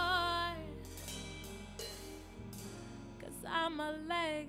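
Live soul band music: a woman's voice holds a sung note at the start, then cymbal and hi-hat strokes over steady low bass notes, and she sings again near the end.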